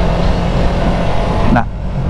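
Yamaha YZF-R3 parallel-twin engine running at a steady cruise on the road, mixed with wind rush.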